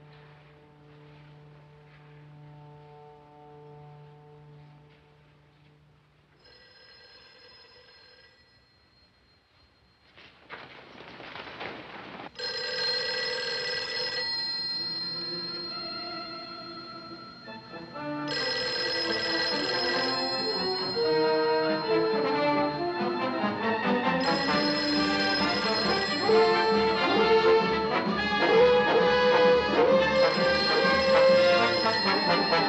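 Dramatic orchestral film score: quiet held chords, then a swelling rush. From about halfway through, a desk telephone bell rings four times in bursts of about two seconds, with about four seconds between, while the music grows louder with brass underneath.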